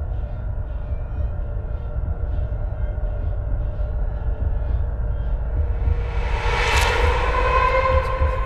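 Ominous horror-film sound design: a deep rumbling drone with held tones and a faint regular tick about twice a second, swelling into a loud rising whoosh near the end.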